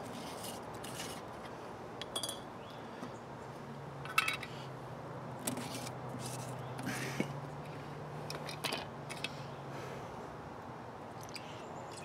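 Perforated metal lids being unscrewed from glass mason feeder jars and set down on wooden hive bars, with scattered clicks, clinks and scrapes of metal and glass. A low steady hum runs under the middle part.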